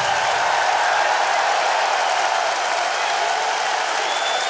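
Large concert-hall audience applauding at the end of a rock song, a steady wash of clapping.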